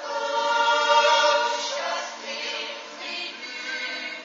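Swiss mixed yodel choir singing a natural yodel (Jutz) a cappella, with men's and women's voices in held chords. The chords swell to their loudest about a second in, then soften.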